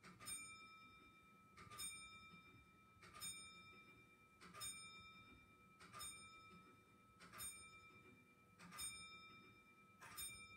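A bell struck over and over at an even pace, about one stroke every 1.4 seconds, each stroke ringing on and fading before the next. It is faint.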